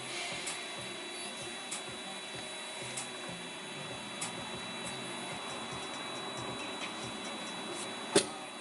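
Steady hum heard from inside a car's cabin, with faint sharp clicks about every second and a quarter: a gas pump nozzle that keeps clicking off instead of filling.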